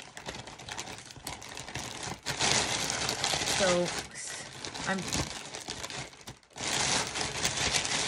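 A plastic poly mailer bag crinkling and rustling as it is handled and cut open with scissors, in two loud stretches: about two seconds in and again near the end.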